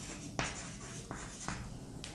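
Chalk writing on a blackboard: faint scratching with a few short, sharp strokes, the strongest about half a second in.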